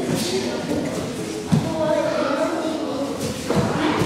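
Two dull thuds of bodies landing on judo tatami mats, about a second and a half in and again near the end, over children's voices echoing in a large hall.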